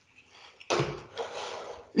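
A person chewing a mouthful of cereal, with a sudden soft knock about two-thirds of a second in, followed by about a second of noisy, hazy sound.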